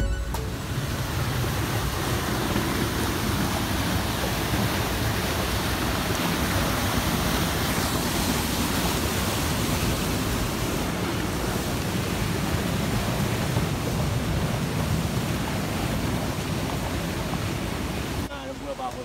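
Fast river in flood rushing over rocky rapids and falls: a steady, loud, even rush of water that holds unchanged throughout.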